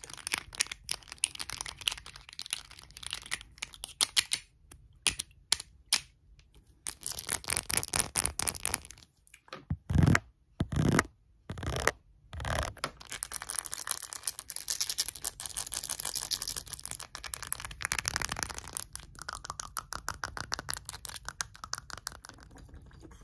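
Short fingernails tapping and scratching fast on small objects held close to the microphone: a dense, chaotic run of quick clicks and scratchy rustling, with a few louder thumps about ten to twelve seconds in.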